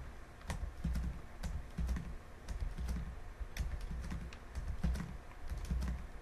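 Computer keyboard keys being pressed in an irregular run of clicks, roughly three a second, each with a dull low thud, as text is edited.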